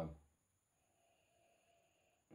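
Near silence: a faint, slow breath drawn in through the nose as a whisky nosing glass is brought up to be smelled.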